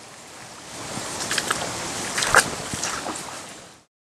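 Wading through a shallow, rocky stream in waders and wellington boots: a few splashing, sloshing steps through the water over its steady running, fading out near the end.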